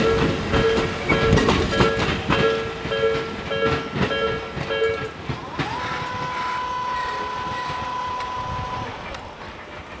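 Japanese level-crossing warning bell chiming rapidly, about two strikes a second, as the last cars of an electric train rumble past on the Tobu Nikko Line. The bell stops about five seconds in, and a steady rising-then-level whine follows as the crossing barrier arms lift, fading out near the end.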